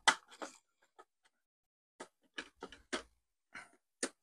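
Scattered light clicks and ticks of a hand screwdriver turning out a small metal screw from the plastic housing of an EcoFlow River power station, irregular, with a few grouped together about two to three seconds in.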